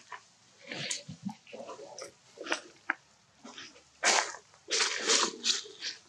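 Long-tailed macaque grooming a young macaque at close range: irregular short scratchy noises and clicks, loudest from about four seconds in.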